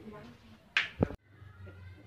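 A sharp snap-like click, then a short low knock a moment later, after which the sound cuts off abruptly at an edit, leaving only a faint low hum.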